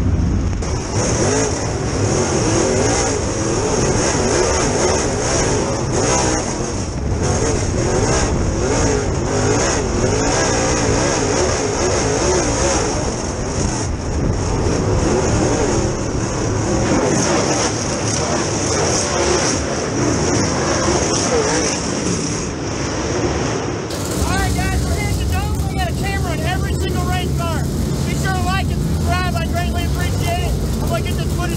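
Dirt Super Late Model race car's V8 engine running, heard through the in-car camera, its note wavering up and down as it idles and rolls at low speed. About six seconds before the end the sound cuts abruptly to a different, warbling sound.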